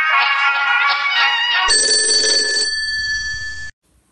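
Music plays for the first second and a half, then gives way to a steady electronic telephone ring of several held tones. The ring cuts off abruptly shortly before the end.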